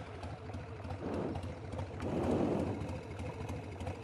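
1999 Harley-Davidson Sportster 1200's air-cooled V-twin engine running steadily at low speed, swelling a little in loudness around the middle.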